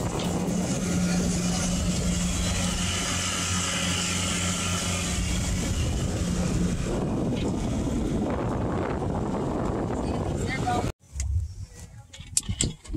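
A boat engine droning steadily over heavy rushing wind and water in choppy seas. The engine tone drops out about seven seconds in, leaving the wind and water, and the sound cuts off abruptly near the end.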